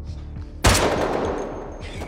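A single loud gunshot about two-thirds of a second in, its report ringing out and dying away over about a second, over a low pulsing film score.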